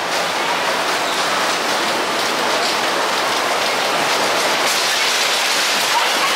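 Hoosier Hurricane's wooden roller coaster train rolling along the track through the station, a loud, steady rolling noise on the wheels and track.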